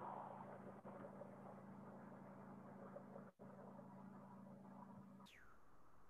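Near silence on a video call: faint background noise with a low steady hum that stops about five seconds in.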